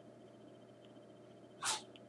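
Quiet room tone with one short, breathy huff from a person a little over a second and a half in.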